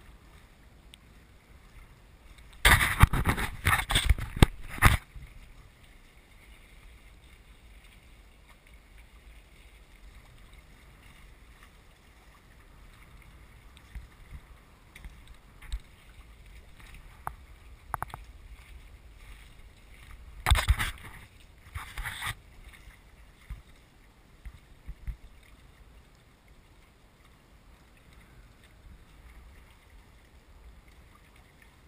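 Water washing along a sailing trimaran's hulls, a low steady noise, broken by two loud spells of water slapping against the hull, about three seconds in and again about twenty seconds in, with scattered clicks between.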